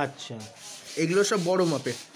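A man's voice speaking in two short stretches, with a brief pause between.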